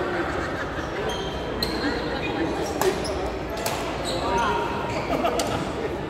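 Badminton rally: rackets striking the shuttlecock in several sharp cracks, the loudest near the middle, with short squeaks of shoes on the court floor, over echoing background chatter in a large hall.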